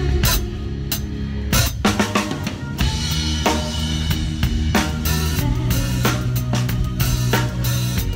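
A drum kit played live with a band: a steady stream of drum strokes close to the microphone, over sustained low notes from the band.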